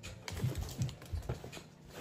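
A quick run of light, irregular clicks and taps, several in two seconds, like small hard objects being handled or keys being pressed.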